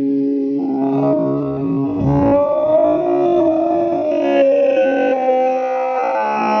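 Many voices singing a slow hymn in long held notes, the chord shifting every second or two.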